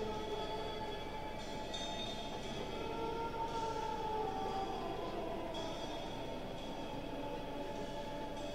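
Slow, droning passage of a live rock concert recording: several sustained tones held and slowly shifting in pitch, with no steady beat.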